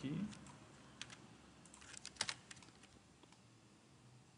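Faint, scattered computer keyboard keystrokes: a handful of isolated taps, the loudest around two seconds in.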